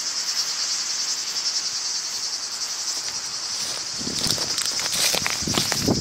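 Steady high-pitched chorus of summer insects chirring in dry scrub. From about four seconds in, rustling footsteps through dry grass.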